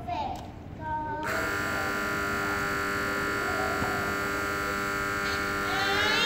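A steady held tone of several pitches sounding together, starting suddenly about a second in and cutting off abruptly at the end, with faint children's voices underneath.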